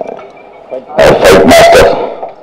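A man's voice through a stage microphone: about a second of pause, then a short loud burst of speech.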